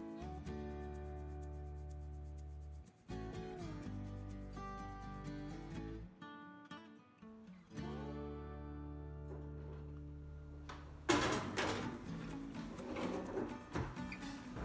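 Background music played on acoustic guitar, with a louder burst of noise about eleven seconds in.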